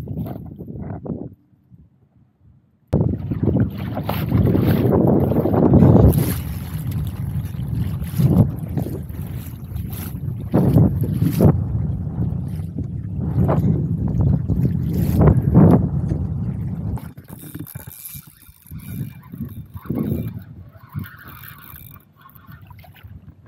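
Wind buffeting the microphone over choppy lake water around a kayak, a loud rushing noise broken by irregular gusts and splashes. It drops to near silence for about a second and a half soon after the start, and eases off over the last few seconds.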